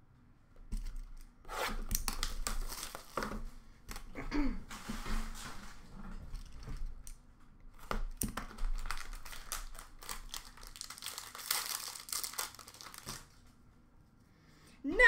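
Wrapping on a box of 2020-21 Upper Deck Ultimate hockey cards being torn and crinkled open by hand, in a run of irregular short rips and rustles that starts about a second in and stops shortly before the end.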